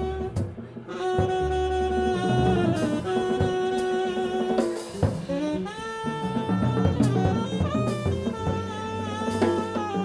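Live jazz trio: a saxophone playing long held notes in phrases that bend at their ends, over plucked upright bass and a drum kit with sharp cymbal and drum hits. There is a brief gap in the lead line just after the start.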